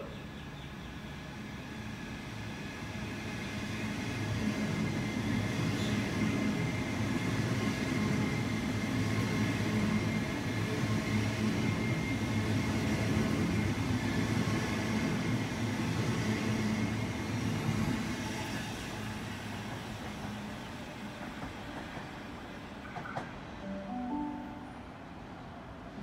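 A Sydney Trains Waratah double-deck electric train running in along the platform: wheel and rail rumble with the steady whine of its traction motors. It builds over the first few seconds, stays loud for a long stretch, then fades. Near the end there is a short chime of rising steps.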